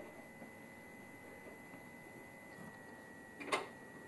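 Quiet room tone with a faint steady high whine, and one sharp click near the end as a baby picks up a plastic toy.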